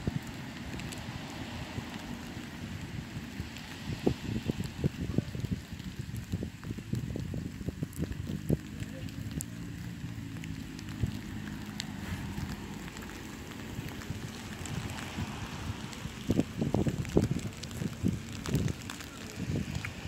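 Wind buffeting the microphone over outdoor street ambience, with irregular low knocks and rumbles. A steady low engine hum from a passing vehicle rises and fades in the middle.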